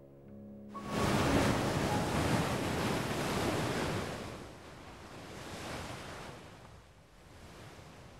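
Surf of a rough sea: the noise of breaking waves starts abruptly just under a second in and is strongest for about three seconds. It eases, swells once more and dies down near the end.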